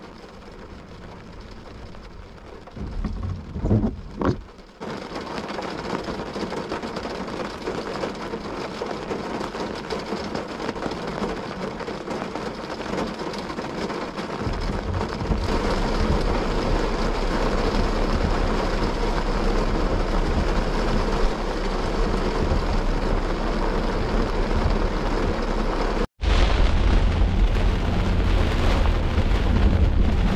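Rain on a vehicle's windshield and roof, growing steadily heavier, with a clap of thunder about three to four seconds in. A deep low rumble joins about halfway. After a brief break in the sound near the end, heavy rain continues with the vehicle driving.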